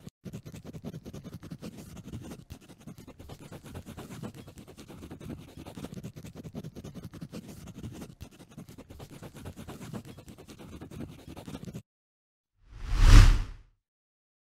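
Pencil scratching on paper, a steady sketching sound that stops about twelve seconds in. After a short gap comes one loud whoosh, about a second long, near the end.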